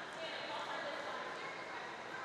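Indistinct voices of spectators and players echoing in a school gymnasium during a volleyball rally.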